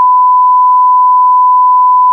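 A continuous electronic beep: one steady, unchanging high pitch held loud and unbroken, like a test tone.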